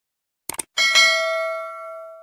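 Mouse-click sound effect about half a second in, then a single notification-bell ding that rings out and fades over about a second and a half. This is the subscribe-button and notification-bell effect of a YouTube end screen.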